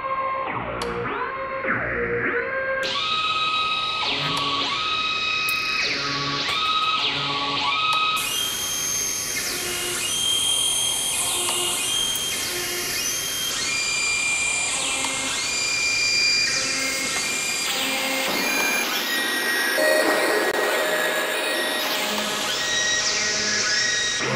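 Electronic dance music in a build-up: short synth notes over a noise sweep that fills the high end from about three seconds in. The bass drops out for the last few seconds.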